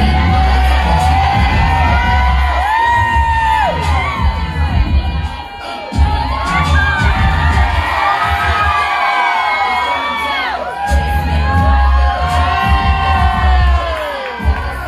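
Recorded song with a sung vocal line and heavy bass beat playing loud over a sound system, with an audience cheering and whooping. The bass drops out for about two seconds past the middle, then comes back.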